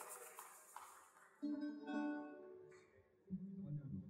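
Plucked string instruments sounding single notes before the music starts: a chord rings out about a second and a half in and dies away over a second or so, and a lower note follows near the end.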